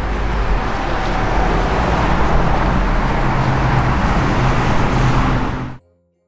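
Steady street traffic noise, a continuous rumble of passing road vehicles, cutting off abruptly near the end.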